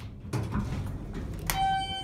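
Montgomery hydraulic elevator's arrival chime: a single ding about one and a half seconds in, a sharp strike followed by a ringing tone that fades out, over a low rumble.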